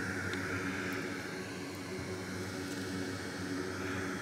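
Steady mechanical hum with an even hiss, like a fan running at constant speed.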